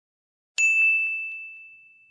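A single bright ding sound effect for a logo intro, struck about half a second in and ringing on as one high tone that slowly fades away.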